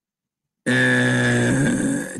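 A man's long hesitation sound, "uhh", held on one steady pitch for about a second and trailing off, after a short stretch of dead silence.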